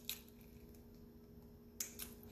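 Small sharp metallic clicks from a metal link watch band's latch being popped off by hand: a light click at the start and a sharper one near the end, over a faint steady hum.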